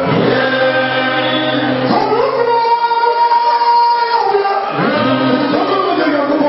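A church congregation singing together, many voices at once, with one high note held for about two seconds in the middle.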